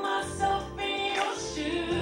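A woman singing a gospel song into a handheld microphone, her voice moving through held, bending notes, with low sustained notes beneath it.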